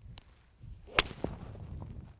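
Golf iron striking a ball on a full swing: a single sharp click about a second in, a well-struck shot.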